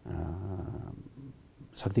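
A man's voice holding a drawn-out hesitation sound at one low, level pitch for nearly a second. After a short pause, normal speech resumes near the end.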